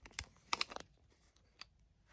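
A few light clicks and taps as a phone on a tripod is handled and straightened, with a quick cluster about half a second in and a single faint click near the end.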